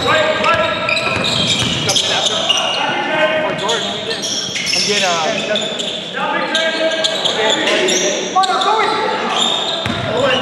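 Indoor basketball game in an echoing gym: a basketball bouncing on the hardwood floor under players' shouted calls and chatter, with a few quick squeaks about halfway through.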